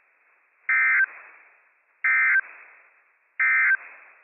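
Emergency Alert System (SAME) end-of-message data bursts: three short, identical bursts of shrill digital tones about a second apart. They mark the end of the weather radio alert message.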